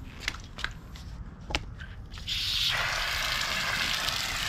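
A few sharp clicks, then about two seconds in a hose starts spraying water onto the car's bumper with a steady hiss, wetting down the scouring powder spread on it.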